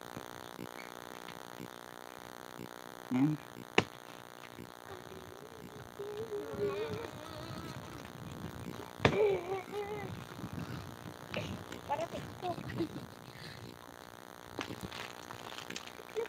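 Faint voices of people talking in snatches, with two sharp clicks, the first about four seconds in and the second about nine seconds in.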